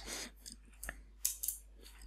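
A few faint, short clicks scattered through the middle, with low room noise between them.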